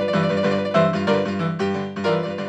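MIDI rock 'n' roll accompaniment from Band-in-a-Box, with the piano part played through a sampled acoustic grand piano patch (Hi-Q Acoustic Mellow Grand Piano in the Sforzando plugin). The piano plays chords in a steady rhythm over a blues progression.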